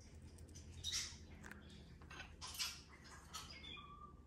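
Faint, scattered soft taps and scrapes, a few at a time, as a capuchin monkey handles small stainless steel coffee cups and pots on a stone countertop.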